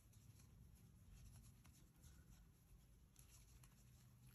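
Near silence, with faint scratching and a few soft ticks of a crochet hook drawing yarn through stitches.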